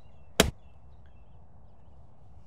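Sand wedge striking a golf ball off fairway turf: one sharp, crisp strike about half a second in.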